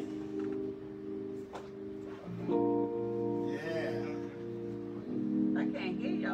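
A live band playing the opening of a slow song: held chords that change about two seconds in and again about five seconds in, with a voice briefly heard over the music.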